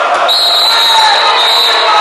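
Handball match in a sports hall: crowd and hall noise, with a ball bouncing on the court floor. A long, high whistle starts about a quarter second in and runs until just before the end.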